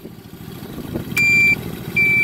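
Mini UTV's turn-signal beeper: a switch click a little over a second in, then a high electronic beep that repeats about every three-quarters of a second. Underneath is the low, steady rumble of the idling 125 cc engine.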